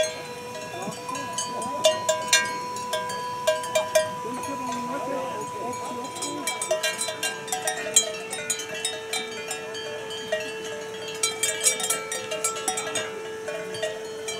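Cowbells on a herd of grazing cattle clanking irregularly as the animals move and shift their heads, with a steady tone held underneath.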